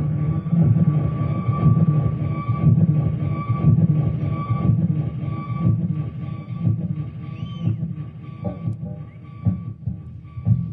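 Live concert sound on a muddy audience tape: a dense low rumble with a steady high tone pulsing through it, fading in the last few seconds.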